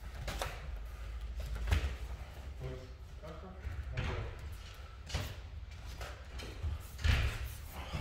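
Boxing and MMA gloves landing in sparring: a handful of separate padded thuds, the heaviest about two seconds in and near the end.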